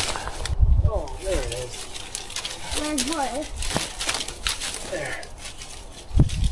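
Dry, dead plant leaves and stalks crackling and rustling as they are pulled and broken by hand, with scattered sharp snaps. A few short vocal sounds come in between.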